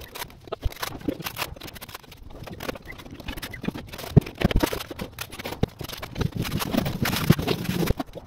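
Dense, rapid clatter of small taps, knocks and scrapes from tiling work: a notched trowel on wall adhesive and hexagon ceramic tiles being set and pressed into place.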